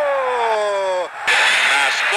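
A Brazilian football TV commentator's long, drawn-out goal cry, held on one voice and sliding slowly down in pitch until it breaks off about a second in. The audio then cuts abruptly to crowd noise, and the commentary for the next play begins.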